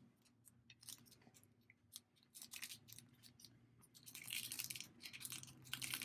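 Faint scratching and rustling of a needle and thread being drawn through a fabric-covered cardboard cup cozy while a button is hand-sewn on, scattered light clicks at first and busier from about two-thirds of the way in.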